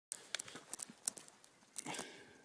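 Dry leaf litter and twigs crackling in a scatter of short, sharp clicks as they are disturbed close to the microphone, with a brief voice sound near the end.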